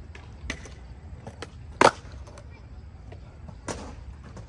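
Skateboards on concrete: one sharp wooden clack of a board striking the ground a little under two seconds in, with fainter knocks about half a second in and near the end, over a low steady rumble.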